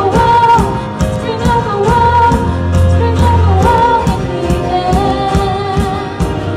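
Live worship band: a woman singing held notes over piano, keyboard and drums, with evenly spaced drum and cymbal strokes keeping time.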